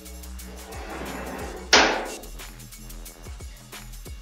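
Compressed air hissing through an air chuck into the truck's air-suspension bags: a softer hiss builds about a second in, then a short, loud blast of air just under two seconds in. The bags are being filled from a compressor now regulated to 125 psi. Background music with a steady beat plays underneath.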